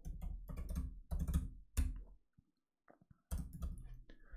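Typing on a computer keyboard: quick runs of keystrokes for about two seconds, a pause of about a second, then one more short run.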